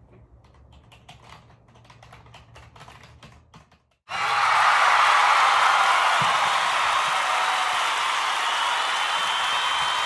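Faint, irregular clicking of a computer keyboard being typed on. About four seconds in it gives way abruptly to loud, steady applause and cheering from a crowd.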